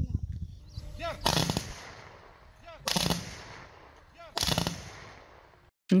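Three volleys of rifle fire about a second and a half apart. Each is a sharp crack followed by a fading echo, typical of a ceremonial funeral gun salute.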